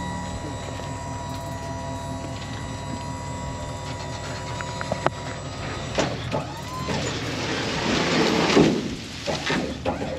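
Pickup dump insert's hydraulic pump running steadily as the bed tilts up. From about six seconds in, a growing rush and rattle of grass clippings and debris sliding out of the bed, loudest near the end.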